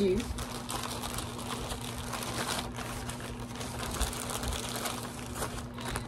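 Plastic packaging crinkling and rustling continuously as hands rummage inside a white mailer envelope for small bagged items, over a steady low hum.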